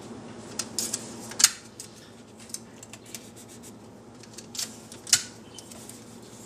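Adhesive tape being pulled and torn from the roll and pressed down around a wooden screen-printing frame: a series of short crackling rips, the loudest about a second and a half in and again about five seconds in.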